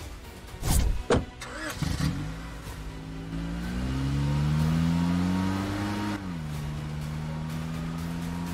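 Two sharp knocks as a car door is shut. Then a Maruti Suzuki Ertiga's engine runs and the car pulls away, its pitch rising as it accelerates, dropping suddenly about six seconds in and then running steadily.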